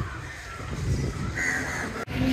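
A crow cawing once, about a second and a half in, over a low background rumble of street noise.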